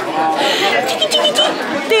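Chatter of many guests talking at once, with several voices overlapping and none standing out clearly.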